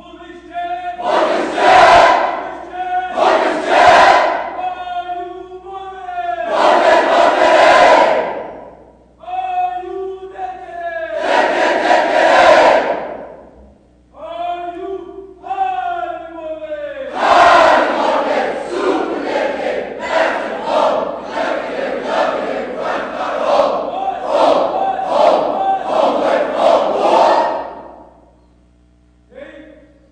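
A large group of cadets chanting a military marching cadence in unison, loud shouted lines with short breaks between them. From about two-thirds of the way in, the chant runs on without a break in a quick, even beat of about two shouts a second, then stops abruptly.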